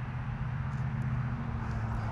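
Steady low mechanical hum with a few constant low tones, over an even outdoor background hiss.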